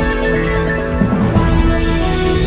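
Closing theme music of a TV news programme, with held notes that shift to new ones about a second in.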